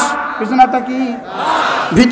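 A man's voice preaching loudly through a public-address microphone, with a short breathy rush of noise near the end.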